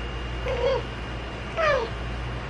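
Baby giving two short whiny cries, the second falling in pitch, about half a second and a second and a half in.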